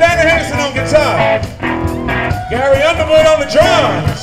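Live blues band playing, with a lead line of bending, wavering notes over bass and drums.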